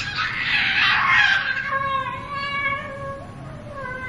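A six-month-old baby's long, high-pitched vocalization: breathy at first, then a held, steady note of about two seconds.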